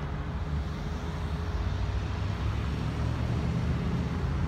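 Steady low rumble of a motor vehicle engine, with a faint steady hum above it.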